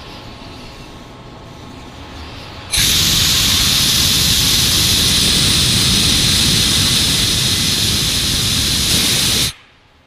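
Pressurized air hissing loudly out of a Groen kettle's steam jacket as the 90 PSI test pressure is vented. It starts suddenly about three seconds in, holds steady, and cuts off sharply just before the end.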